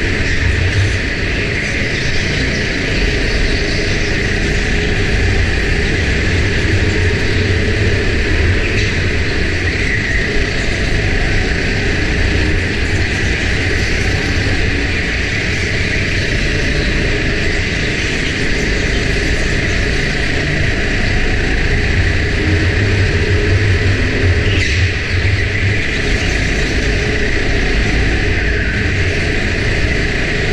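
Indoor rental go-kart running at speed, heard from the kart's onboard camera as a steady, loud, muffled drone without distinct revving.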